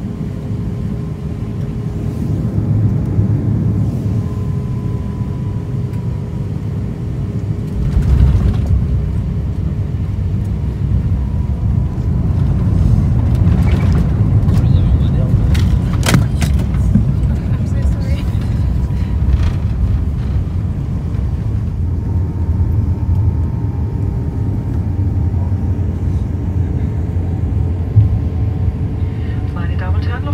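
Cabin noise of an Airbus A350-900 landing: a steady low rumble, a sudden jolt and jump in rumble about eight seconds in as the wheels touch down, then a louder rumble with some clicks and rattles during the rollout that settles as the aircraft slows.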